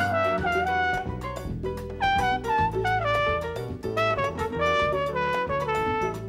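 Live Latin jazz band playing: a brass horn solos a stepping melody line over bass and steady percussion.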